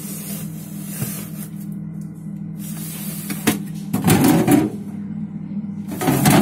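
A plastic freezer drawer being handled and shifted: a click, then a louder scrape and rustle of frozen packets about four seconds in, over a steady low hum.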